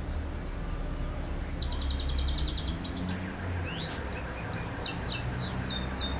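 A bird singing: a fast high trill for about three seconds, then a run of separate high falling notes, over a low steady hum.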